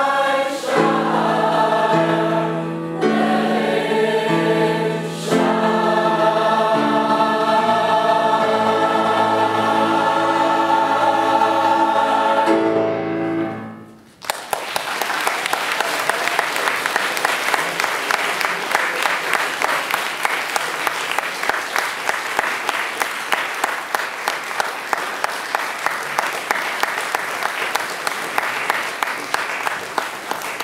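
A choir singing in sustained chords, holding a final chord that fades out about fourteen seconds in. An audience then applauds steadily to the end.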